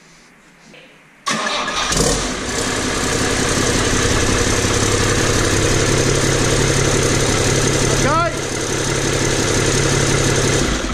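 Iveco six-cylinder turbo diesel engine starting up about a second in, then running steadily and loud. No exhaust system is fitted yet, so it runs open.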